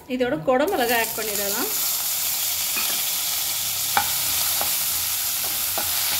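Chopped green capsicum frying in hot oil in a nonstick kadai: a steady sizzle that begins about a second in as the pieces hit the oil. A few sharp clicks from a steel spatula stirring against the pan come later on.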